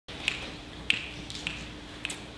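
Three sharp, evenly spaced clicks, about one every 0.6 seconds, over a faint steady hum.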